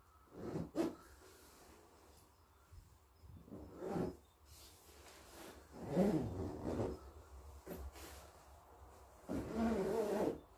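The Pertex Quantum nylon shell of a Rab Ascent 1100 XL down sleeping bag rustling in short, irregular bursts as a man wriggles into it on a camp cot, with a few short grunts of effort.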